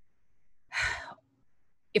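A woman's single audible breath, about half a second long, roughly a second in, in a pause between sentences; her speech starts again at the very end.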